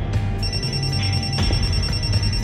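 A mobile phone ringing: a high, rapidly pulsing tone that starts about half a second in, over background music with a low drone.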